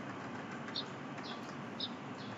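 A small bird chirping faintly, short high chirps roughly every half second, over a steady background hiss.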